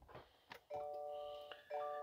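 Subaru Outback's dashboard warning chime: a soft chord of several steady tones sounds twice, first about two-thirds of a second in and again near the end.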